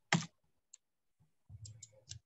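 A few scattered short clicks from a computer: one sharp click just after the start and a small cluster near the end, over faint room noise.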